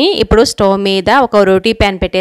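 Speech only: a woman talking without a break.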